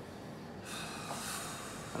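A man huffs out a long breath through his lips: a quiet airy exhale that starts about half a second in and lasts just over a second, the sound of someone weighing a question that is not easy to answer.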